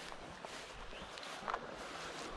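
Footsteps on grass: a few soft footfalls, the loudest about one and a half seconds in, over a steady faint outdoor hiss.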